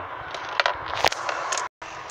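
A few light clicks and knocks of handling over steady background hiss, broken by a moment of dead silence about three-quarters of the way through where the recording is cut.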